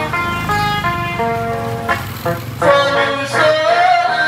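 Electric guitar played through a small portable loudspeaker: an instrumental bolero melody of single notes stepping up and down, with a note bent upward near the end.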